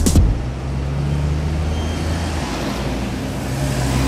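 Road traffic, with a steady low hum of car engines idling close by and an even wash of street noise.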